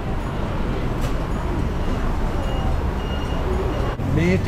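Steady low rumble of street traffic noise, with faint voices of people nearby.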